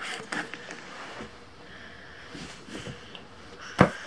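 Quiet room with faint small rustles and soft clicks, and one sharp click just before the end.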